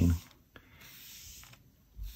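A small white cleaning pad rubbing across a comic book's paper cover, a faint soft hiss lasting about a second.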